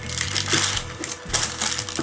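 Wooden spoon pressing and spreading thick batter in a baking-paper-lined tin in repeated strokes, the baking paper crinkling and scraping, over soft background music.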